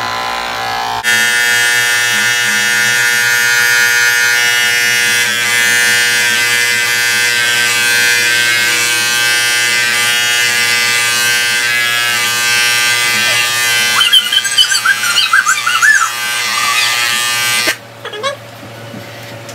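Corded electric hair clippers buzzing steadily as they cut hair, the buzz getting louder about a second in. Near the end, a few short, wavering high-pitched sounds come in over the buzz.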